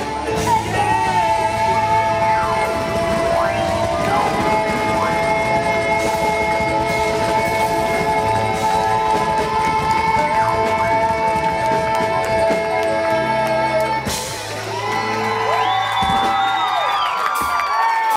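Live glam rock band playing, with a stage keyboard in the mix and long held notes sustained for several seconds over the band. There is a brief drop in loudness about fourteen seconds in.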